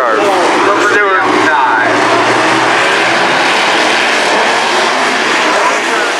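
A pack of dirt-track stock cars racing past, their engines running hard at speed in a dense, steady wall of engine noise.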